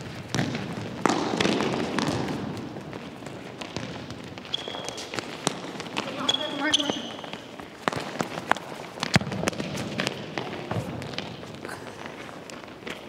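Indoor futsal in a sports hall: repeated sharp knocks of the ball being kicked and bouncing on the wooden floor, a few short high squeaks of shoes on the floor in the middle, and players' indistinct calls, with the hall's echo.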